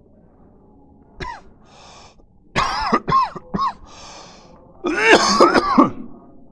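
A man coughing in a series of harsh coughs: one about a second in, three more in quick succession in the middle, and a louder run of coughs near the end, with breaths drawn in between.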